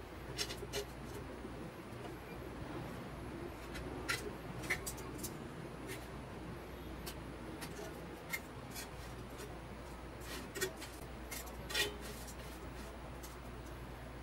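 Metal kitchen tongs and a knife clicking and clinking against a nonstick pan and a stainless steel plate as pita bread pieces are cut and lifted: about a dozen short, sharp clinks at irregular intervals over a low steady hum.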